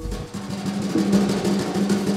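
Music: a busy drum passage with a drum roll, between brass chords, with a low drum sounding repeatedly in the second half.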